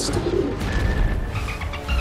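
Pigeon cooing, a sound effect laid over a film trailer's music score, with a deep rumble swelling near the end.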